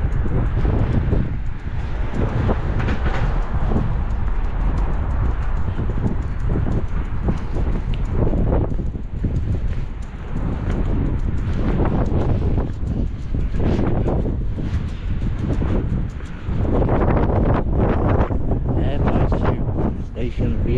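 Wind buffeting the camera's microphone, a heavy continuous low rumble that swells and drops, with the camera-holder's footsteps on the pavement as he walks.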